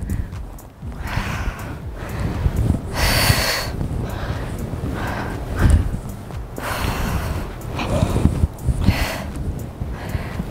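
A woman's heavy breathing during a dumbbell lunge-and-squat exercise: forceful exhales repeating every second or two, the strongest about three seconds in.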